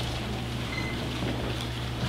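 Room tone: a steady low hum under a faint even hiss, with no event standing out.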